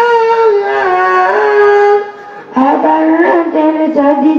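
A single high voice chanting or singing unaccompanied in long held, wavering melodic notes, pausing for breath about two seconds in and resuming at a lower pitch.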